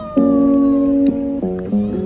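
Acoustic guitar ringing out sustained chords that change every half second or so, with a few cajon hits, and a thin high tone sliding slowly downward over the first second.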